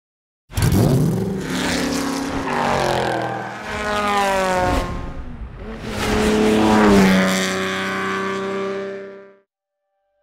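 A car engine revving hard under acceleration: the pitch climbs, drops back about five seconds in as if through a gear change, climbs again and holds, then cuts off suddenly a little after nine seconds.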